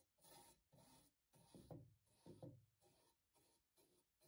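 Bristle paintbrush stroking liquid paint remover over the rusty metal base of a paper cutter: faint, quick rubbing strokes at about two to three a second, with two louder strokes near the middle.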